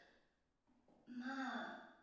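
A woman's short sigh about a second in, after a moment of near silence.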